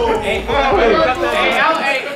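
Several men's voices talking and calling out over one another: loud, overlapping group chatter.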